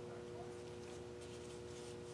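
Faint scratchy rubbing of gloved hands gripping and shifting a stretched canvas as it is tilted, over a steady electrical hum.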